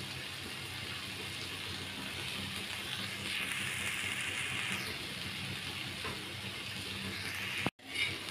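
Potato, pea and carrot strips sizzling steadily in oil on a tawa, with the sound cutting out for a moment just before the end.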